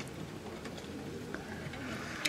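Quiet outdoor background with a bird calling faintly.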